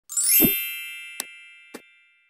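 Logo intro sound effect: a bright chime with a short rising shimmer and a low thud about half a second in, ringing on and slowly fading. Two short clicks land over the ring, about a second and a second and a half in, from a subscribe button and notification bell animation.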